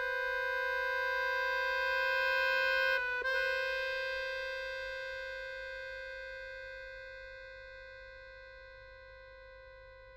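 Chromatic button accordion holding a single long note that swells for about three seconds, breaks off for a moment, then sounds again and slowly dies away.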